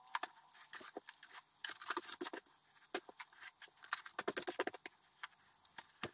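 Hands scooping and moving dry shredded-paper worm-bin bedding: irregular papery rustling and crinkling in quick clusters with short gaps.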